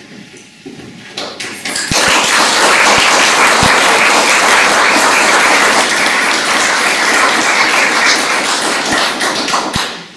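Audience applauding. A few scattered claps come first, then full clapping starts about two seconds in and keeps an even level until it dies away just before the end.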